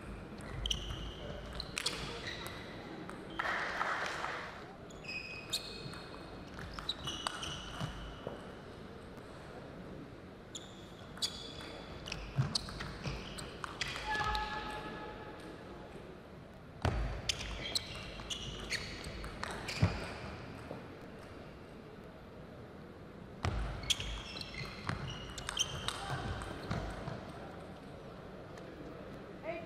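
Table tennis doubles rallies: the plastic ball clicking quickly back and forth off rubber-faced paddles and the table, in several bursts separated by short pauses between points. Rubber-soled shoes squeak on the court floor with short high chirps as the players move.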